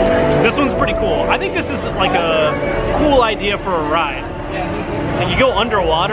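People talking, with steady background music underneath.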